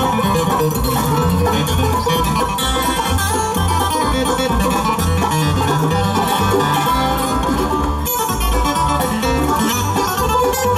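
Live bluegrass band playing a steady instrumental passage: banjo, acoustic guitar, mandolin, dobro and upright bass, with the bass notes pulsing underneath.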